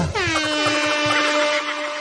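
Air horn sound effect: one held blast that swoops down in pitch as it starts, then holds steady on a single note.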